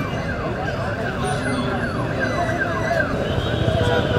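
A siren sounding a fast series of falling sweeps, about three a second, which stop about three seconds in, over steady street noise and crowd chatter.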